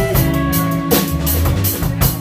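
Live band with a drum kit, bass and two electric guitars playing a steady groove. The cymbal or hi-hat strokes come about four times a second over the bass and guitars.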